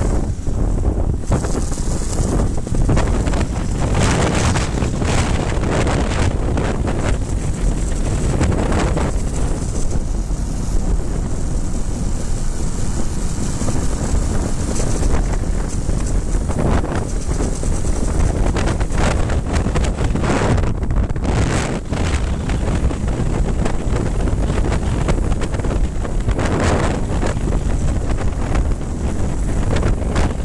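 Heavy wind buffeting on the microphone of a camera riding on a moving trials motorcycle, with the bike's engine running underneath. The noise is steady and rough, without a clear engine note.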